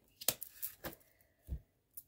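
Oracle cards being handled on a wooden tabletop: a few short, soft taps and slides as a card is laid down and the deck is moved, with a duller knock about one and a half seconds in.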